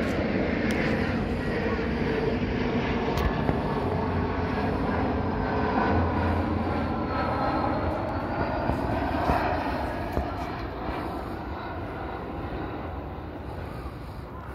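Jet airliner passing low overhead: a steady engine rush with a slowly shifting whine, fading gradually over the last few seconds.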